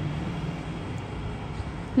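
Steady low background rumble with a faint hum and no speech.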